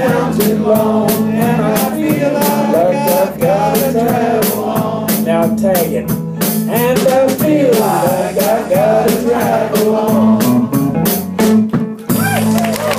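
Small live country band playing: electric guitar, electric bass and a drum kit keeping a steady beat, with voices singing the melody over it.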